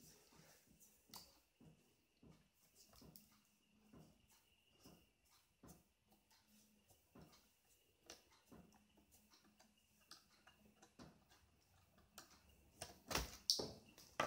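Near silence with faint, irregular clicks and ticks from a small screwdriver backing out the last screw that holds a laptop LCD panel in its frame, and a couple of louder knocks near the end.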